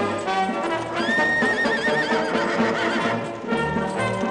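A horse whinnies once, about a second in: a high call that rises, quavers for about two seconds and tails off. A brass band march plays throughout.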